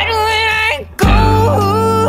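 Guitar-driven indie rock song: a female voice sings a melody over guitar and a steady bass line, with a brief gap just before a second in.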